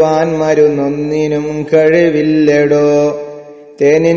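A man chanting a line of Arabic verse in a slow, melodic recitation with long held notes. There is a brief break about halfway through, and the second phrase fades out near the end.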